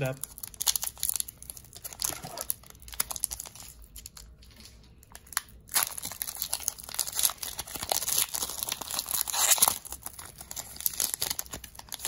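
Foil Pokémon booster pack crinkling in the hands and being torn open, with a sharp crackle about halfway through and dense crinkling after it.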